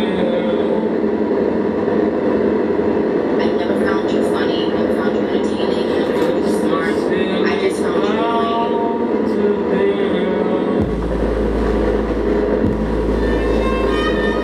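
Live electronic noise music: a dense, distorted wash of noise with wavering pitched tones and a flurry of glitchy clicks. About eleven seconds in, a deep steady bass drone cuts in suddenly and dips out once briefly.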